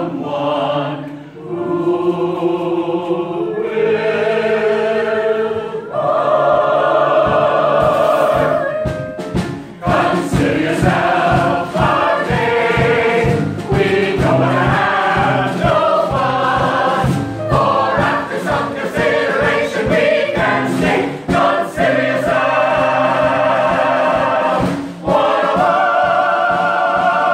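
Mixed choir of men and women singing together in full harmony. Slow held chords at first, then a faster section over a steady beat from about ten seconds in, closing on long held chords.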